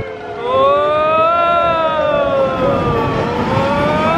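Ride noise on the Expedition Everest roller coaster: a loud, siren-like wail that rises and falls in pitch, swelling about half a second in, sinking through the middle and rising again near the end.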